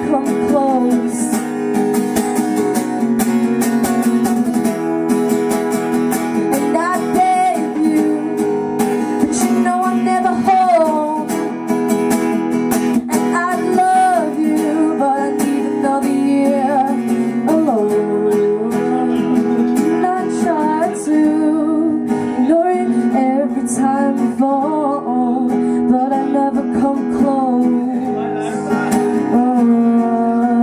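A young woman singing into a microphone while strumming an acoustic guitar. The strumming runs steadily throughout, under held vocal notes that bend in pitch.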